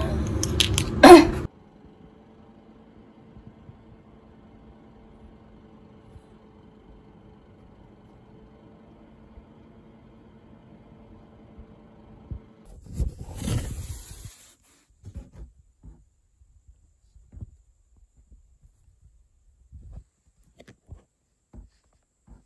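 A printer's faint steady hum, then a short noisy mechanical rush from the printer about thirteen seconds in, followed by a few scattered light clicks.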